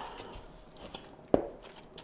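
A stainless steel mixing bowl knocked once, about a second and a half in, with a short metallic ring, as sourdough dough is stretched and folded in it by a gloved hand. Around it are faint handling sounds.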